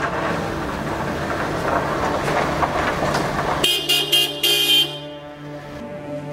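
A car horn honking several short times in quick succession about two-thirds of the way through, after a few seconds of loud, rough rushing noise.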